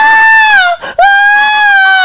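Two long, high-pitched wails in a falsetto cartoon Mickey Mouse voice, each about a second long, holding steady and dropping in pitch at the end, with a short break between them.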